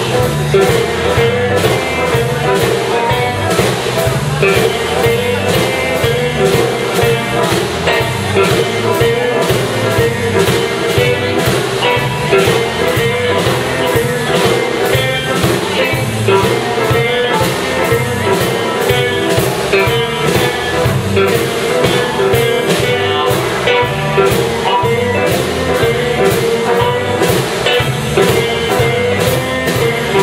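Electric blues band playing a shuffle live: electric guitars, bass guitar and drum kit, with the drums keeping a steady beat throughout.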